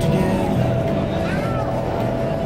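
Steady rush of an indoor skydiving wind tunnel's airflow and fans, heard through the viewing glass, with music and indistinct voices mixed in.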